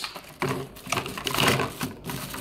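Plastic blister pack of a die-cast toy car crinkling and crackling as a hand pries and tears it open, in rapid irregular crackles.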